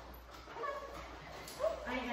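A puppy giving a couple of brief, high-pitched whimpering yips.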